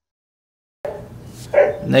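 A dog barks once, about one and a half seconds in, picked up through a headset's boom microphone over a faint hiss that cuts in from dead silence about a second in.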